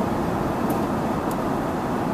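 Steady road noise inside a moving car's cabin at freeway speed.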